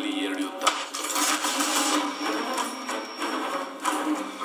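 A film trailer's soundtrack playing back, all sound effects: a sharp hit under a second in, then dense metallic clattering with a brief thin high tone in the second half.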